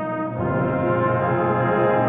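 School concert band and orchestra playing held chords, with the brass section (horns, trombones, trumpets) leading; a new chord comes in about half a second in.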